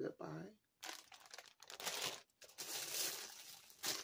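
Plastic packaging crinkling and rustling as it is handled, starting about a second in and going on for about three seconds, busiest near the end.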